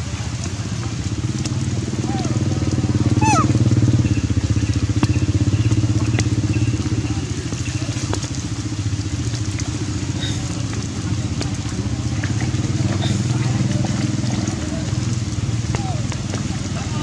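A steady low drone, like a motor running nearby, continues throughout. A short high squeak, rising and then falling in pitch, comes about three seconds in.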